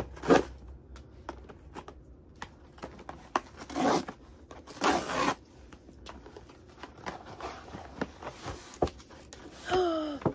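Large paper mailer envelope being torn open by hand: short ripping sounds near the start and twice more about four and five seconds in, with paper rustling and small clicks between.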